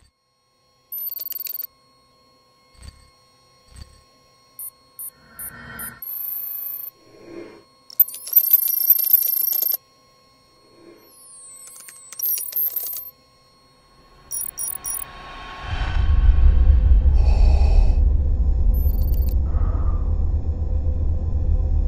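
Short electronic beeps, chirps and glitchy sweeping tones, sound effects laid under an on-screen computer display. About three-quarters of the way in, a steady low rumble starts and becomes the loudest sound.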